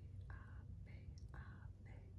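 A woman whispering short syllables softly in an even rhythm, about two a second.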